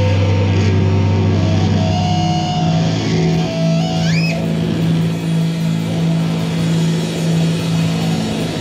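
Live rock band playing, with distorted electric guitars and bass holding long, low sustained notes that shift up in pitch about two seconds in. A brief rising, wavering high tone sounds about halfway through.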